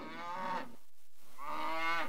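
Cow mooing twice: a short falling moo, then a longer moo that rises in pitch.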